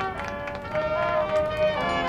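High school marching band playing: brass holding sustained chords, with percussion hits. The chord changes just after the start and again near the end, with one strong held note in between.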